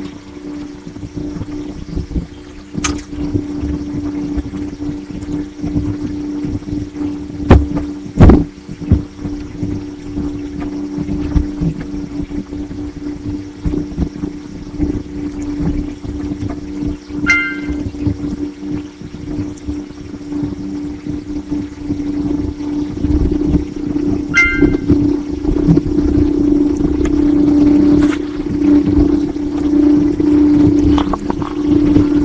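A steady low hum that grows louder over the last several seconds, with a few sharp clicks and two short high tones.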